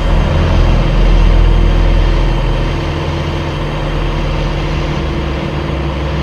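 Car engine running with a steady, deep low drone, loudest in the first couple of seconds.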